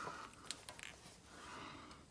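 Near quiet: a few faint, light clicks in the first second from a car amplifier's metal chassis being held and turned in the hands.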